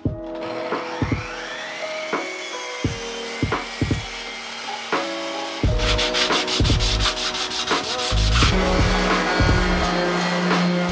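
Woodworking power tools on wood: a motor spins up with a rising whine near the start, then from about six seconds in a random orbital sander runs on a board, louder. Background music plays underneath.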